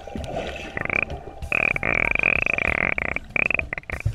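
Buzzing underwater drone picked up through a submerged action camera, breaking off and returning several times over about three seconds.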